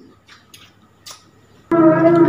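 Near the end, a loud sung Islamic call to prayer (azan) cuts in abruptly with long held notes. Before it there are only a few faint clicks in a quiet room.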